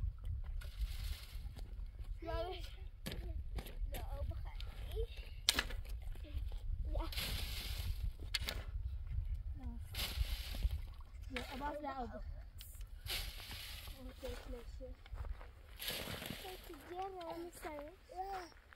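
Several scraping, crunching strokes of a shovel blade digging into loose dry soil, over a steady low wind rumble, with children's voices here and there.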